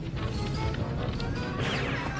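Cartoon soundtrack: background music with crashing, clattering slapstick sound effects.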